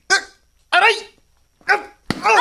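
A dog barking three times in short, sharp barks.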